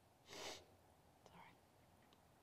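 Near silence, broken by a brief breathy whisper about half a second in and a fainter, shorter one a second later.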